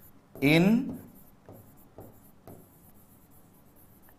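Pen writing on an interactive display board: faint taps and scratches of the pen tip on the screen, about two a second, as a word is handwritten.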